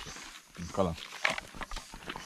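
A man's voice: a short murmured vocal sound a little over half a second in, then low background sound.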